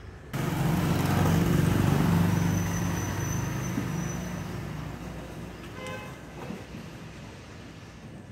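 Engine of a road vehicle running close by: a loud, steady low hum that starts suddenly and then fades away over several seconds.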